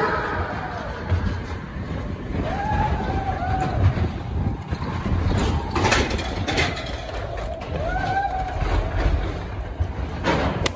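Matterhorn Bobsleds roller-coaster car rumbling along its steel track through the mountain. Riders call out in short rising and falling whoops, and there are a couple of sharp clacks about six seconds in.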